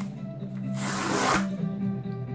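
Packaging being torn open: one short ripping sound about a second in, over background music.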